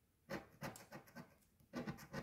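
Coin scraping the coating off a paper scratch-off lottery ticket: two quick runs of short scratching strokes, the first starting about a quarter of a second in and the second near the end.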